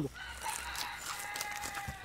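A rooster crowing once, fainter than the nearby voices: one long call that holds steady and dips slightly at the end.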